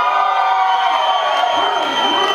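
Concert crowd cheering and whooping, many voices held together.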